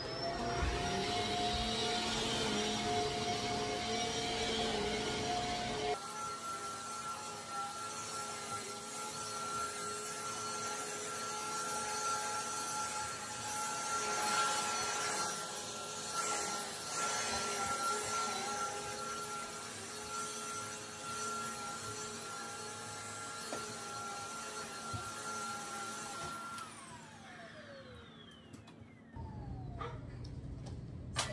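Upright vacuum cleaner running on carpet: the motor starts with a quick rising whine, runs steadily with the hiss of air, and its note changes abruptly about six seconds in. Near the end it is switched off and the whine falls away as the motor winds down.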